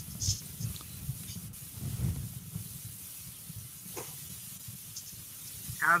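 Faint hiss and low rumble from an open video-call microphone, with a soft click about four seconds in; a man starts speaking near the end.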